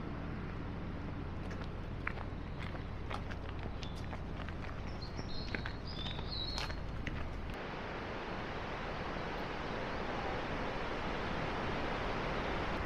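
Footsteps on an outdoor path under a steady outdoor hiss, with a few short high bird chirps about halfway through. A little after the middle the low rumble drops away and a brighter, even hiss carries on to the end.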